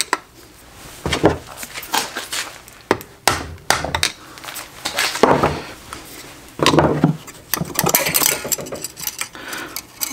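Steel pick or screwdriver clicking and scraping against a locking ring and the aluminium transfer case around the input bearing, prying the ring out of old RTV sealant. The metal-on-metal clinks and longer scrapes come irregularly.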